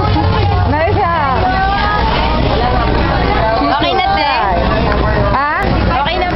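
People talking over one another close by, with background crowd chatter and a steady low rumble underneath.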